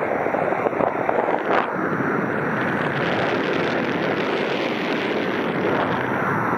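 Wind rushing over the microphone of a camera on a paraglider in flight: a steady, loud noise with no tone in it, and a brief crackle about one and a half seconds in.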